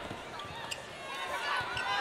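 Basketball arena sound during live play: a crowd murmur with scattered distant voices and a few faint knocks, among them the ball being dribbled on the court.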